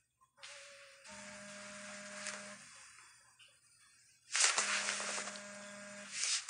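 Smartphone vibrating against a wooden tabletop with an incoming call: two buzzing pulses of about a second and a half each, with a pause between.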